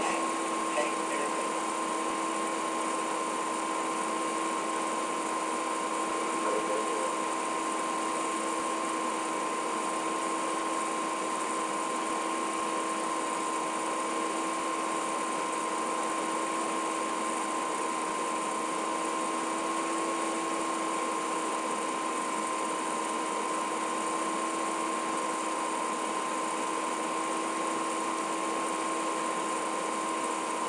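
Steady electronic hiss with a constant hum of three steady tones, unchanging throughout and with no speech.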